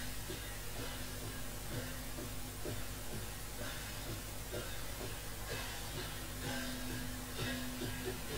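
Live Kachin drum-dance music: drums beaten in a steady beat of about one strong stroke a second, with lighter strokes between, over a held note and a wash of higher sound.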